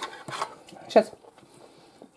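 Speech: a woman says one short word about a second in, with a few faint soft noises before it and quiet room tone after.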